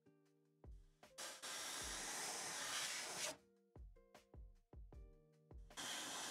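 Airbrush spraying paint in two bursts of loud hiss: a two-second burst starting about a second in, and another starting near the end. Background music with piano-like notes and a beat plays under it.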